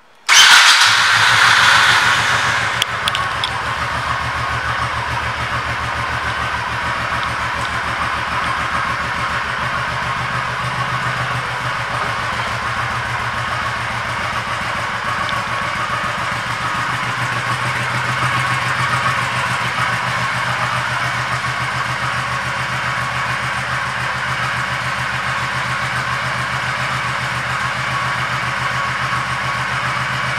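2002 Honda Shadow Sabre's 1100 cc V-twin starting up: it comes in suddenly, is louder for the first couple of seconds as it catches, then settles into a steady idle.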